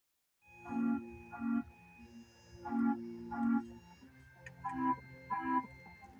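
Cartoon soundtrack music played through a television: an organ-like keyboard sounds three pairs of short chords, the two chords of each pair about two-thirds of a second apart.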